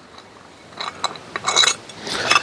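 Metal clinking and rattling as the column of an axle stand is pulled out of its base, starting about a second in after a quiet moment.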